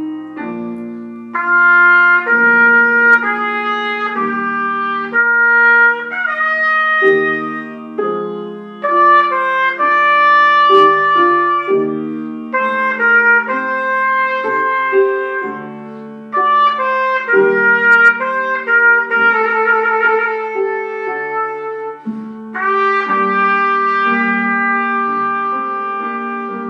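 Trumpet playing a slow melody with grand piano accompaniment, in phrases a few seconds long separated by short breaths. A held note about three quarters of the way through wavers with vibrato.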